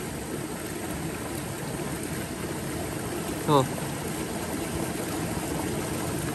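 Steady rushing noise of running water, even and unbroken throughout.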